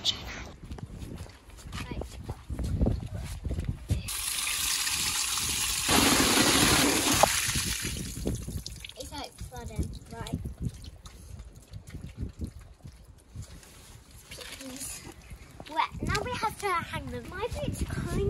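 Water running or pouring for about four seconds, a thin hiss at first that grows fuller and louder halfway through, with scattered knocks of handling before it.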